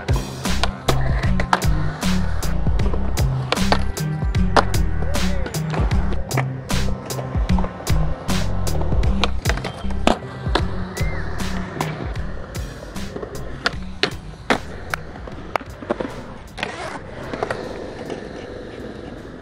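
Skateboard tricks on concrete: many sharp clacks of the board popping and landing, with wheels rolling and grinding on ledges. Under them runs a song's instrumental beat, which fades in the second half.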